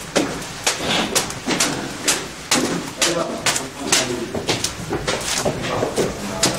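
Footsteps of several people on hard stairs, sharp steps at about two a second.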